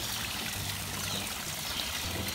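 Steady sound of water pouring and trickling into a fish pond.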